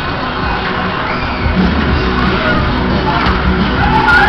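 Loud pop music from a Musik Express fairground ride's sound system, with riders shouting and cheering over it.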